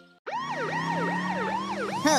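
Cartoon emergency-vehicle siren starting after a brief gap, its pitch sweeping up and down about three times a second over a steady low hum.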